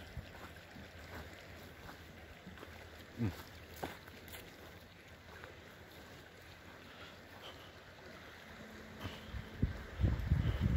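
Faint outdoor ambience: a low, steady wind rumble on the microphone, with two short low sounds about three and four seconds in.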